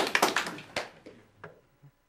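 Audience applause: a scatter of claps that thins out and stops about a second and a half in.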